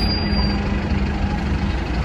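City bus engine idling: a steady low rumble with a constant hum that stops shortly before the end.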